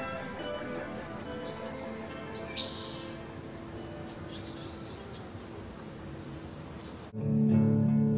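Short, high bird chirps repeating roughly once a second over a faint, steady musical drone. About seven seconds in, louder strummed acoustic guitar music cuts in.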